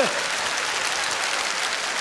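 Live audience applauding steadily.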